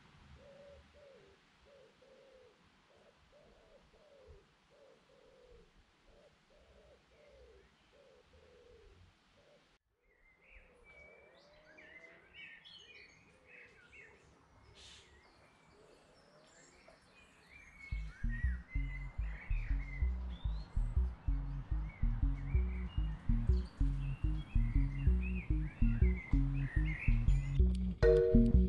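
Faint birdsong outdoors: first a low call repeated about twice a second, then after a short break higher chirping and twittering. Background music with a heavy steady beat comes in about two-thirds of the way through and becomes the loudest sound.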